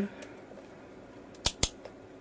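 Two sharp clicks in quick succession about one and a half seconds in, with a couple of fainter clicks around them: small tools being handled while measuring capacitors.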